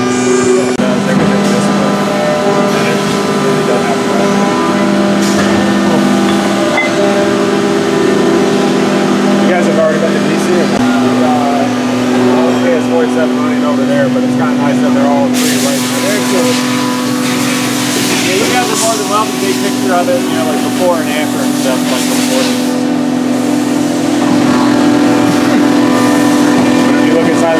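Machine shop din of CNC machines running: several steady whines that jump to new pitches every few seconds, under indistinct voices, with a loud hiss from about 15 to 22 seconds in.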